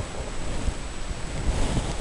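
Wind rumbling on an outdoor microphone: a steady low buffeting with a few soft knocks, under a faint, steady high-pitched whine.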